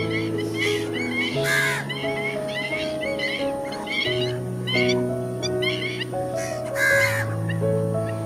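Background music with slow, sustained notes, overlaid with bird calls: short chirps repeating throughout, and two louder harsh calls about a second and a half in and again near the end.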